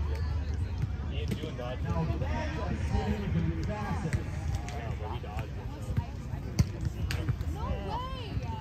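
Scattered distant voices of people around an outdoor volleyball field, with several sharp smacks of a volleyball being struck. The loudest smack comes about six and a half seconds in.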